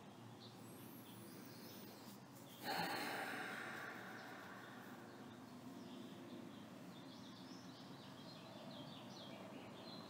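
A person's deep breath, audible close to the microphone about two and a half seconds in, starting suddenly and fading away over a couple of seconds. Faint bird chirps over a low steady hiss in the background.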